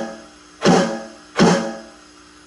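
Two accented stick strokes on an electronic drum kit, about three quarters of a second apart, each sounding as a sharp hit with a pitched ring that dies away.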